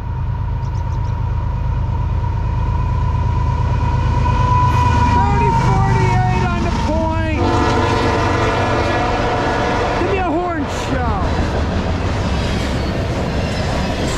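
A CSX freight train's lead GE ES44AC-H diesel locomotive passes slowly with a heavy, steady low rumble and a thin high whine over it. The freight cars then roll past with wheel-on-rail clatter.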